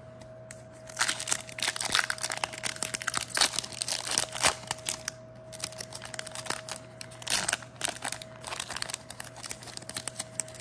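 Foil Pokémon trading-card booster pack wrapper crinkling and tearing as it is pulled open by hand. The crackling is densest from about a second in to the middle, then comes in lighter bursts, with another cluster late on.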